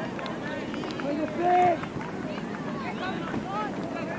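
Scattered, overlapping shouts and calls from people around an outdoor soccer match, with one louder drawn-out call about a second and a half in.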